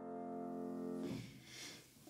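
Grand piano's final chord at the end of a sonata, ringing and slowly fading, then cut off about a second in as the keys and pedal are released, leaving faint room sound.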